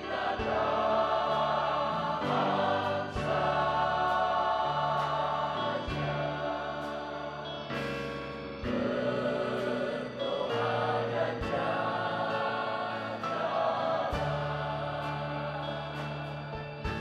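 Church choir singing a slow worship song in Indonesian over instrumental accompaniment, with long held notes and a bass line that changes every few seconds.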